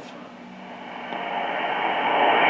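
JRC NRD-545 shortwave receiver's speaker output on an AM broadcast: static with faint programme audio, rising steadily in level as the RF gain is turned back up from minimum.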